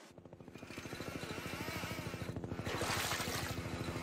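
Helicopter rotor chopping in a fast, even beat over a steady engine hum, swelling in loudness after the first second. A burst of rushing hiss comes in around three seconds in.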